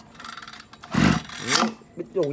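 A single dull thump about a second in as a small air-cooled engine is handled and moved, followed by a short grunt.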